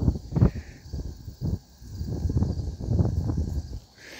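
Irregular low rumbling of wind buffeting a phone microphone outdoors, with a few soft handling bumps as the phone is moved.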